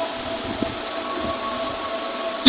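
Steady background noise with a faint, constant high hum.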